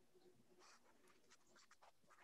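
Near silence: a pause in the speech, with only a few very faint clicks.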